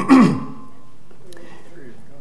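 A man clears his throat once at the very start. Then there is a pause with only faint room sound.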